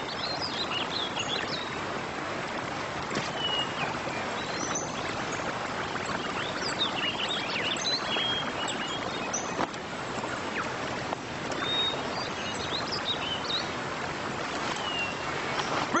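Steady rushing water, with short bird chirps over it.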